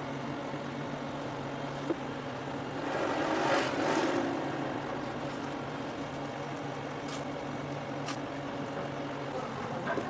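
A steady low mechanical hum, with a swell of louder noise about three seconds in that fades by about five seconds, and a few faint clicks.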